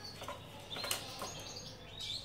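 Faint clicks and light rattling of thin wire being threaded between the metal bars of a small bird cage.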